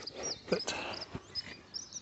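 Small birds chirping in the background, a scatter of short, high notes, with a few faint rustles or clicks.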